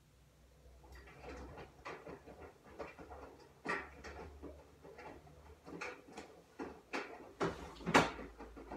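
Someone handling things in a kitchen: a run of knocks, clicks and rustles starting about a second in, with the loudest knock near the end.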